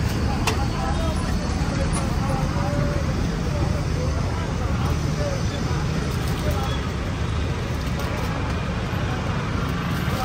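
Steady low rumble of road traffic with indistinct voices mixed in.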